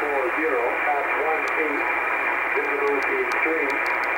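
A voice reading aviation weather on the Trenton Volmet shortwave broadcast, received in upper sideband. It sounds thin and muffled under steady radio static.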